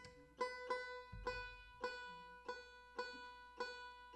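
A plucked string instrument picking the same single note over and over, about three times a second, each note ringing briefly before the next.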